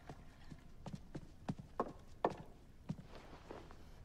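Footsteps clacking on a polished wooden floor, unevenly paced at about two steps a second, some steps ringing briefly.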